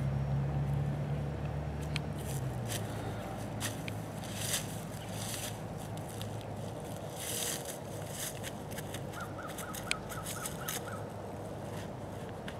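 Outdoor park ambience: a low steady hum that fades out after about two seconds, scattered soft rustles and scuffs, and a quick run of about eight faint bird chirps near the end.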